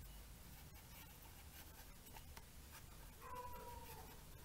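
Near silence with faint strokes of a felt-tip marker writing on paper. Near the end comes a short, faint tone that falls slightly in pitch.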